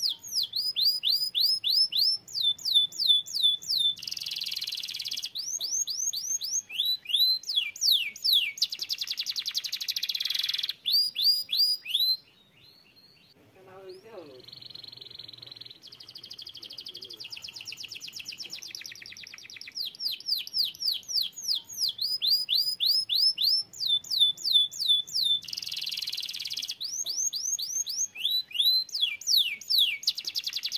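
Domestic canary singing: phrases of repeated falling whistles and fast rolling trills, each phrase held for a second or two. The song breaks off briefly about twelve seconds in and then starts again.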